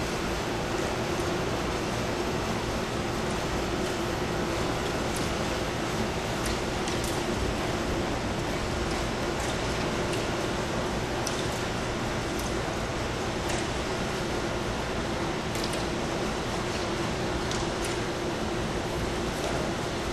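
A steady hum and hiss that holds unchanged throughout, with a constant low tone, the kind a machine running nearby makes, and a few faint high ticks scattered through it.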